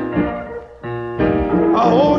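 Gospel song: keyboard chords held between sung lines, with a short dip in level a little under a second in and the lead voice coming back in near the end.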